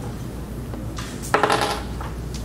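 A sharp clink about a second and a half in, with a short ringing tail, like a small hard object dropped or knocked; a faint click comes just before it.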